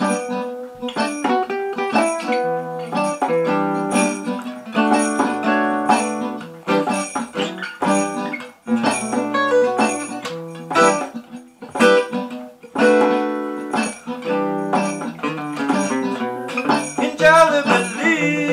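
Acoustic guitar played alone, picked chords and single notes in a steady rhythm: the instrumental intro of the song, before the singing comes in.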